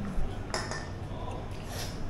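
A few light clinks of tableware, with a sharp one just after the start, another about half a second in and a fainter one near the end, over a steady room background.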